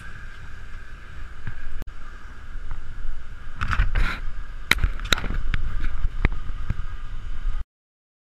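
A boat's engine running with a steady hum and low rumble, with irregular knocks and slaps on the deck as a freshly landed fish is handled, thickest in the second half. The sound cuts off suddenly near the end.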